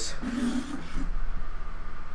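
A steady low electrical hum, with a faint murmur of a voice early on.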